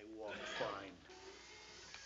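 A brief vocal sound from a person in the first second, then quiet room sound.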